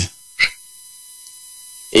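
A pause on a phone-in line: a faint steady electrical hum with thin high tones, broken by one short tick about half a second in.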